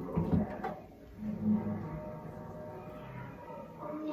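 A kitchen knife cutting and scraping a papaya on a plastic cutting board, with a few short knocks in the first second.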